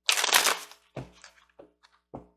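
A deck of angel romance oracle cards being shuffled: a dense rustle of cards for most of the first second, then a few light clicks and taps of cards.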